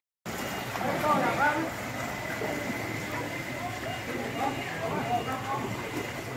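Distant voices of several people talking over a steady outdoor background noise, after a brief dropout of silence at the very start.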